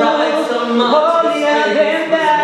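A small group of men and women singing a cappella together, several voices holding overlapping notes in harmony and moving between pitches.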